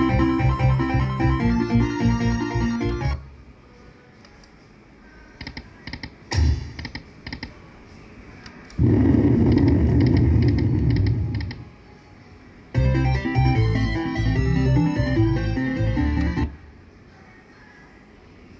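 Buffalo Stampede slot machine's electronic sound effects during its free-spin bonus. A fast, beeping synthesized reel-spin tune plays for about three seconds. Some nine seconds in there is a loud, low noise for about two and a half seconds, and then the reel-spin tune plays again for about four seconds.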